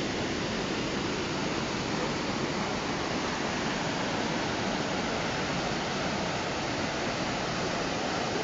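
Creek whitewater rushing steadily through a narrow channel between smooth boulders, a constant even rush of water.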